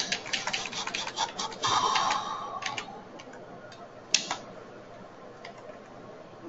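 Computer keyboard typing: a quick run of keystrokes for about three seconds, then a few separate key presses.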